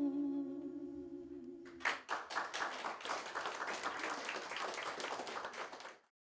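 A song for voice and acoustic guitar ends on a held final note. About two seconds in, a small audience breaks into applause and keeps clapping steadily.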